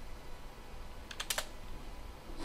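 Computer keyboard keystrokes, a quick burst of a few clicks about a second in: typing 'y' and Enter to confirm a pip uninstall prompt.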